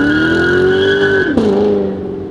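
Chevrolet Corvette V8 revving during a burnout, with a steady tyre squeal. The engine note climbs for just over a second, then drops suddenly as the revs fall and the squeal stops.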